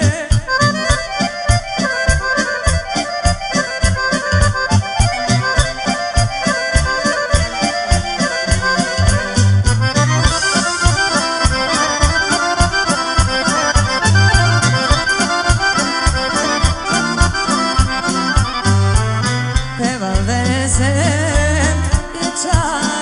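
Serbian folk band playing an instrumental break: accordions lead with fast melodic runs over keyboard and a steady drum beat.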